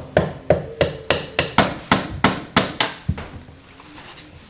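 Hammer striking repeatedly in quick, even blows, about three a second, about a dozen in all, stopping about three seconds in.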